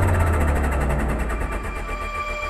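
Big room techno track in a drumless passage: a low bass drone slides slowly down in pitch under a fast, even fluttering pulse, with no kick drum.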